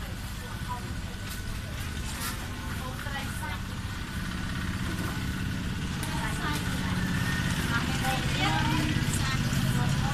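Women and small children talking in low voices, over a steady low engine hum that grows louder from about halfway through.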